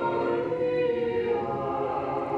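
A choir singing slowly in long held notes.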